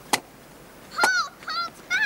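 A single sharp axe blow into a log on a wooden chopping block. About a second later come three short, high calls, each rising and then falling, about half a second apart.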